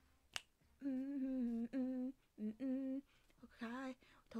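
A single sharp click, then a woman's voice humming a slow tune in held notes, in several short phrases with brief gaps between them.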